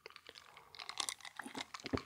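A few faint, irregular small clicks and ticks close to the microphone, coming more often in the second half.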